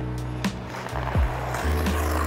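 Background music, an electronic track with deep kick drums that drop in pitch over sustained bass notes. A hiss swells up through the second half.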